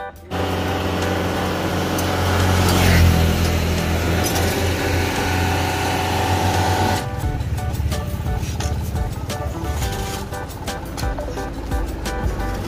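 Background music with a plucked, rhythmic pattern. For the first seven seconds a loud, steady, low vehicle engine rumble lies over it and then cuts off abruptly.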